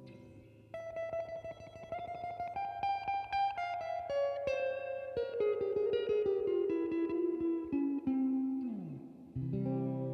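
Kadence Astroman Strat-style electric guitar played clean through a Fender Tone Master Deluxe Reverb amp with reverb on and tremolo off. A fast single-note lead line climbs and then works its way down, ends in a slide down in pitch, and a chord is struck near the end.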